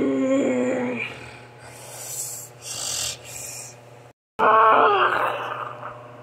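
A person voicing creature sounds for toy figures: a long, wavering vocal call at the start, breathy hissing noises around the middle, and a second loud vocal call about four and a half seconds in that trails off.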